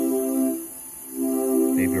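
Nord Stage 3 synth engine on its 'UniSaws 2' unison saw-wave preset holding a sustained chord, while the filter frequency knob is turned to pick a starting point for a sweep. The chord dips in level a little before halfway and comes back up about a second in.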